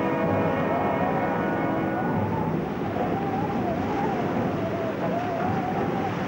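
Rushing noise of heavy, breaking seas, overlaid with a background score. A held chord of steady tones fades out about two seconds in, and a wavering high tone runs throughout.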